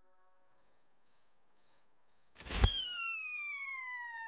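A break in an electronic children's song. About two seconds of near silence with four faint, evenly spaced high blips, then a sudden hit followed by a slowly falling synthesized glide.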